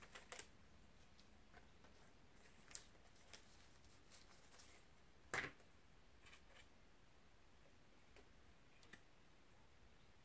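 Near silence broken by a few faint clicks and rustles of a trading card being taken out of its wrapper and handled, the clearest about five and a half seconds in.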